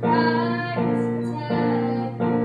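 Grand piano played in slow, sustained chords, a new chord struck about every three quarters of a second.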